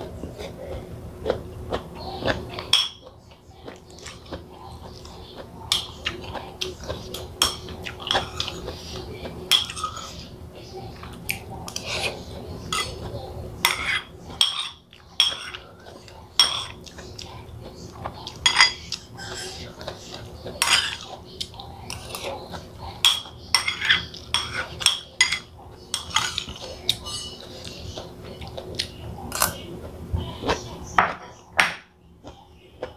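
Metal spoon clinking and scraping against a ceramic bowl while eating, many small irregular clinks throughout, over a faint steady hum.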